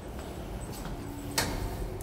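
Elevator's automatic stainless-steel sliding doors opening with a low hum and a faint high steady tone, then a single sharp knock about one and a half seconds in.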